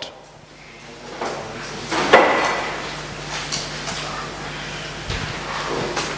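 Room noise of people settling in a hall: scattered knocks and bumps, with a louder rustling scrape about two seconds in, over a steady low hum.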